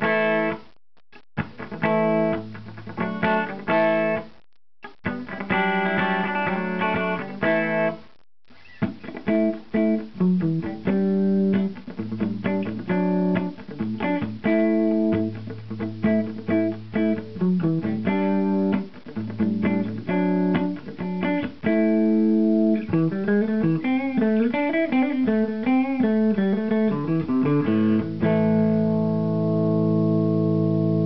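2007 Gibson Les Paul R9 (1959 Standard reissue) electric guitar played through a 1964 Fender Princeton 6G2 tube combo amp with its volume on 6. Strummed chords are broken by three short stops in the first eight seconds, then come busier picked chord-and-note lines, ending on a held, ringing chord near the end.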